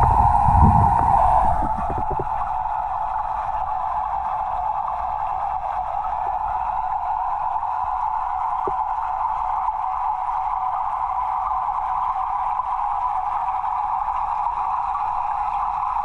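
Steady underwater hum inside a large fish tank, picked up by a submerged camera. Louder rumbling and a few knocks come in the first two seconds.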